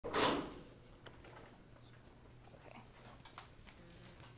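A loud rustling burst of the camera being handled right at the start, then a few faint scattered clicks and shuffles over a steady low hum of room noise.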